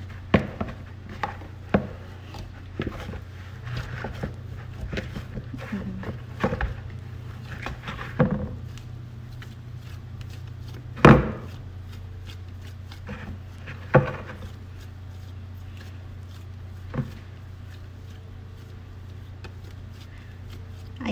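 Bread dough being kneaded by hand in a plastic bowl: irregular soft slaps and knocks as the dough is lifted, folded and pressed against the bowl, the loudest about halfway through. A steady low hum runs underneath.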